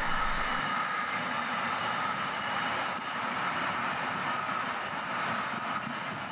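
Intermodal freight train of pocket wagons carrying lorry trailers rolling past, a steady run of wheels on rail with a faint, even high whine.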